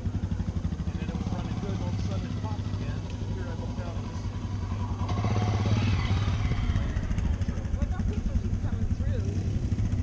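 Dirt bike engines running; one dirt bike rides past close by, loudest briefly about five to six seconds in.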